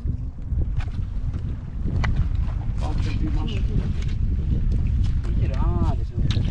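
Wind buffeting the microphone, a steady low rumble, with scattered light clicks and knocks.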